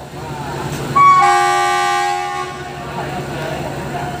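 Horn of an Alsthom diesel-electric locomotive at the head of a passenger train: one steady multi-tone blast about a second in, held for about a second and a half before it fades out.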